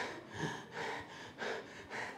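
A man's soft breathing in a pause between spoken phrases, a few quiet breaths picked up close on a clip-on microphone.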